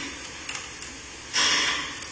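A quiet pause with a few faint clicks, then a loud breath drawn in near the end, lasting about half a second.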